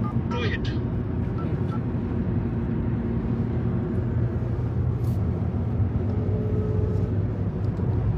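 Steady road and engine noise of a moving car, heard from inside the cabin as a constant low rumble.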